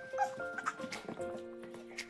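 Background music: a string of held, steady notes moving from pitch to pitch, with a few light clicks and a brief higher sound about a quarter second in.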